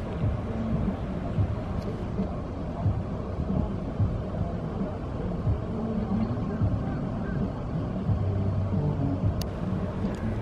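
Low, steady rumble of a car heard from inside its cabin, with no sharp sounds.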